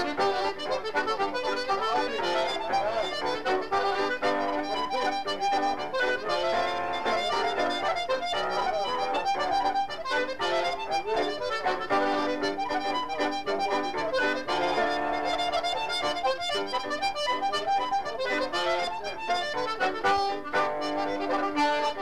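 Accordion playing a fast Irish traditional reel, with piano accompaniment.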